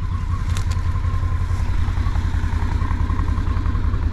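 Side-by-side UTV's engine idling with a steady low rumble, and a couple of light clicks about half a second in.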